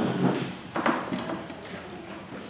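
Footsteps and a few knocks on a wooden floor as a child gets onto a piano stool, the loudest knock about a second in.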